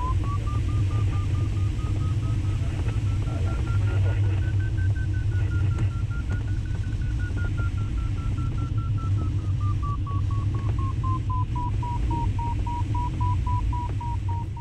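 Glider variometer beeping rapidly, its pitch rising over the first few seconds and sinking back after about ten, the sign of the glider climbing in lift, faster and then more slowly. Steady airflow rush in the cockpit beneath it.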